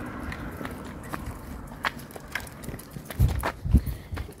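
Footsteps on a paved street, a light irregular click about every half second to second, with a few low thumps in the last second.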